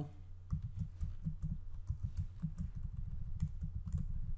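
Rapid, irregular computer keyboard keystrokes starting about half a second in, from typing a line of code, over a steady low hum.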